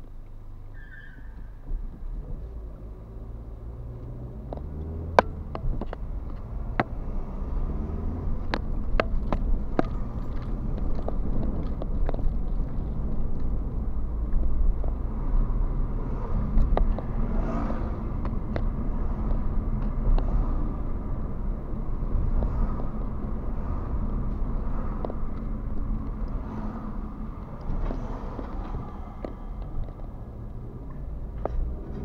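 A car's engine and road noise heard from inside the cabin as it pulls away and speeds up over the first several seconds, then drives on steadily. A few sharp clicks and knocks break through.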